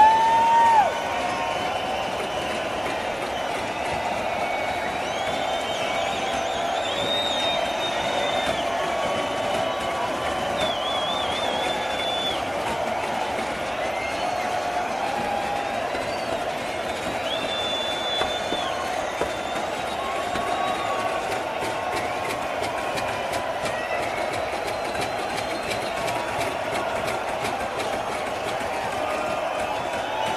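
Large concert crowd cheering and shouting between songs, a steady din with shrill whistles rising above it now and then; the loudest is a whistle in the first second.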